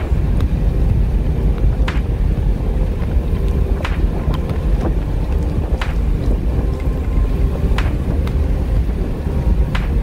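Steady low road rumble of a car driving at speed, heard from inside the cabin, with a short sharp click about every two seconds.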